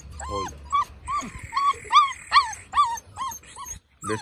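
American Staffordshire Terrier puppy whining in a string of short, high-pitched cries, about two a second.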